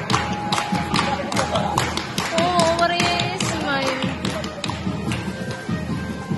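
Loud Sinulog dance music, drum-heavy, with fast, sharp beats that thin out near the end. A voice glides over it in the middle.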